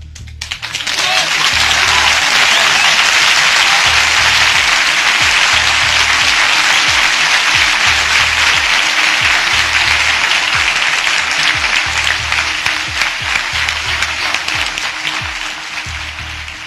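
Crowd applauding, swelling up within the first second or two and tapering off near the end, over background music with a steady low beat about once a second.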